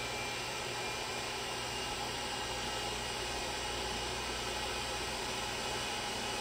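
Steady, even hiss of background room noise, like a fan or ventilation running, with no distinct knocks or clicks.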